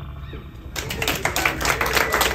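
Audience clapping that breaks out about three quarters of a second in and quickly thickens into applause, just after the song's last guitar note ends.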